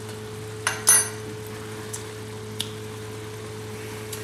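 Two short kitchen clinks about a second in, the second louder with a brief metallic ring, over a steady low hum.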